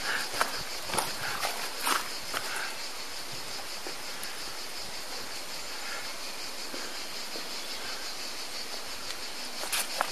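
A steady high-pitched chorus of insects chirring, with a few scattered footsteps on the path in the first couple of seconds.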